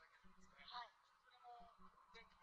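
A man talking, recorded at low level.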